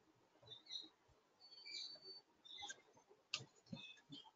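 Near silence: faint room tone with a few scattered faint high chirps and a sharper click a little past three seconds in.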